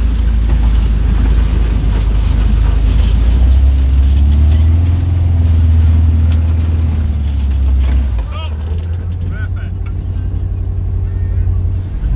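Volkswagen split-screen bus engine running as the bus creeps slowly forward. It revs up a little and back down between about four and eight seconds in, then drops away.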